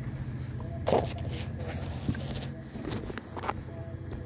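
A steady low engine hum, fading out after about two and a half seconds, with scattered knocks and clatter. The loudest is a single knock about a second in.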